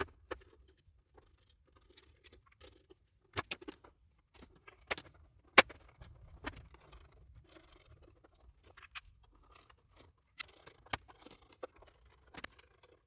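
Scattered plastic clicks, taps and knocks, with faint rustling between them, as the iBook G3 Clamshell's case parts and display bezel are handled and fitted back together.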